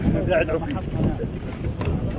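Men's voices calling out close by over a steady low rumble of wind buffeting the microphone.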